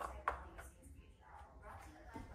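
A dog nosing at a plastic treat-puzzle toy: a couple of faint clicks from its plastic bone-shaped covers near the start, then very little.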